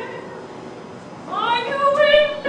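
A sung phrase dies away in the hall's reverberation, then about a second and a half in an opera singer's voice slides upward into a new held note.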